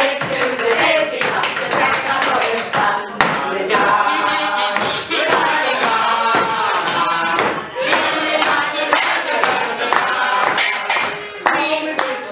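A group of women's voices singing a band-style tune without words, imitating brass instruments, over short taps of a hand-held drum.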